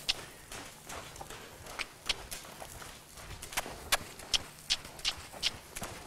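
Hoofbeats of a horse trotting on soft arena footing: a run of light, sharp clicks, a few each second.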